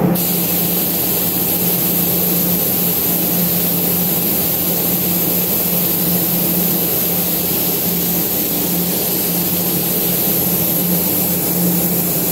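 Steady, high hiss of rushing air that starts suddenly and runs on unchanged, over a constant low motor hum.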